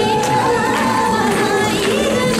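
Marathi gavlan song playing, with singing on long, wavering held notes over a drum beat.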